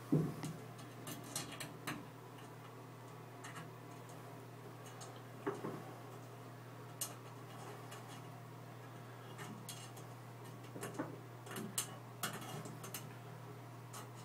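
Light, scattered clicks and taps of small parts being handled as pins are set into a tub grab bar's mounting rod, with one louder knock right at the start, over a steady low hum.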